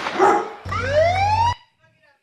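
Sound effects dropped in at the end of a hip-hop beat: a dog bark, then a police-siren whoop rising in pitch over a held bass note, cutting off abruptly about one and a half seconds in.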